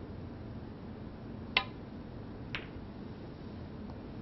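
Snooker shot: a sharp click as the cue tip strikes the cue ball about one and a half seconds in, then a softer clack about a second later as the cue ball hits the object ball.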